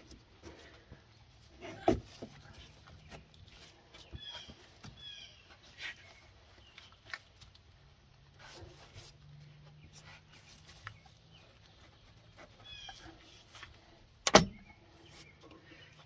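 Handling noise from fitting a rubber lower radiator hose onto the radiator outlet: faint rubbing and small clicks, a sharp knock about two seconds in and a louder one near the end. Faint bird chirps in the background.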